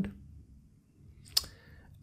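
A single sharp click from a computer mouse about one and a half seconds in, against quiet room tone.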